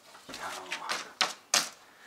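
Sheets of printer paper handled on a wooden desk: a few crisp rustles and snaps, the loudest two just past the middle.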